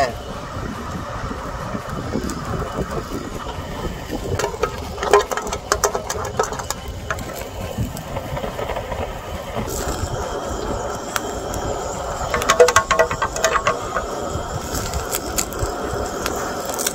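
Butane cassette-gas torch running steadily with a continuous flame roar, searing food in a metal pot, with clusters of small clicks and crackles from about four to seven seconds in and again near the end.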